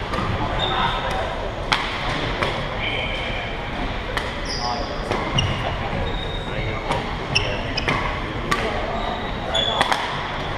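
Badminton rally: rackets striking a shuttlecock in a string of sharp cracks about a second apart, with short high squeaks of sneakers on a gym floor, in a large echoing gymnasium.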